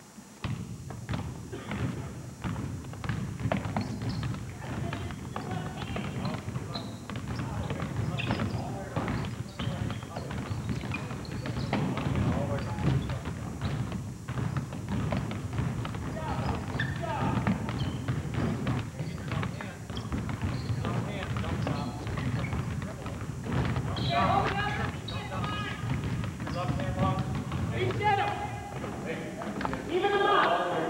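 Several basketballs being dribbled on a hardwood gym floor, a dense, uneven patter of bounces throughout, with voices over it in the last few seconds.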